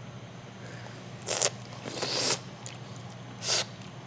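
Olive oil being slurped from small tasting cups, air drawn through it in three short hissing slurps, the middle one longest, over a low steady hum.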